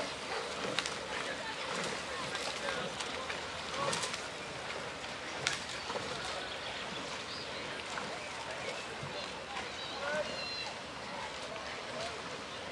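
Background chatter of a riverbank crowd, with no clear words, over steady outdoor noise and a few scattered sharp clicks.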